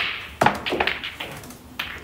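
A pool cue strikes the cue ball with a sharp click, followed by a quick run of clicks as the pool balls knock together and into the pockets during a trick shot.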